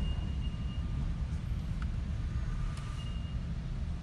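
Low, steady rumble of a car's engine and tyres heard from inside the cabin while driving slowly, with two faint short high-pitched tones, one at the start and one near the end.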